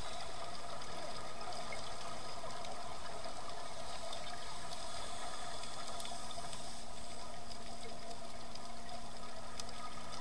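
Underwater ambience recorded on a diving camera: a steady low hum with even background noise and faint scattered clicks.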